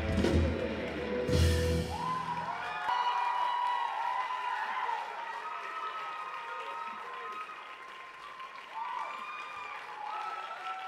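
A rock band's final drum-kit hits and cymbal crash end the song within the first two seconds. The audience then cheers and applauds, with shouted voices over the clapping, slowly dying down.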